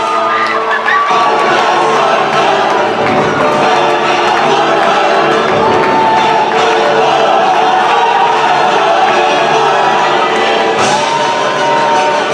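Entrance music playing with an audience cheering.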